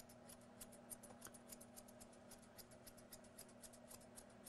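Faint, rapid snipping of thinning shears cutting through a Shih Tzu's coat, about six snips a second.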